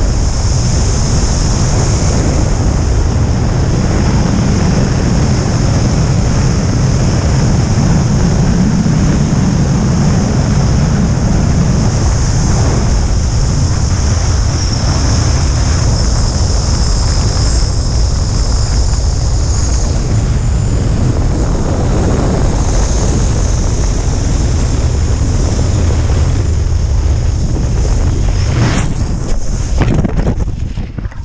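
Steady, loud rush of air buffeting the camera's microphone during a wingsuit flight at full flying speed. It wavers right at the end as the parachute deployment begins.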